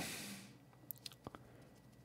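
A short breath at the start, then near silence broken by a few faint, small clicks.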